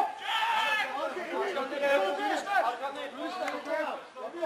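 Men's voices shouting and calling across a football pitch, several overlapping, the words not made out.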